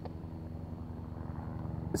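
Distant helicopter flying overhead: a steady, low beating hum from its rotor that grows slightly louder.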